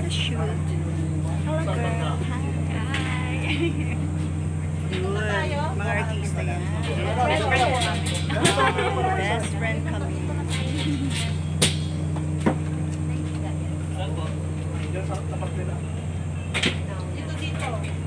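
A steady low machine hum that holds constant, with people talking in the background and a few sharp clicks.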